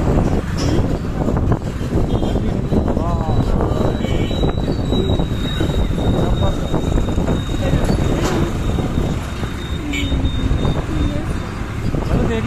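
Wind buffeting the microphone and road noise from a moving two-wheeler in street traffic, with voices talking briefly now and then.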